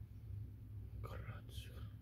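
A man's quiet, half-whispered speech starting about a second in, over a steady low hum.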